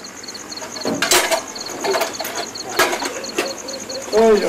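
Crickets chirping in a steady pulsing rhythm, with a few sharp knocks and clatters over it, the loudest about a second in.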